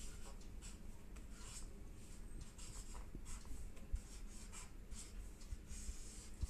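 Marker pen scratching on chart paper in a run of short, faint strokes as a word is written by hand.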